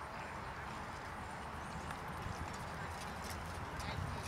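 Hoofbeats of a horse cantering over grass, becoming more distinct in the second half.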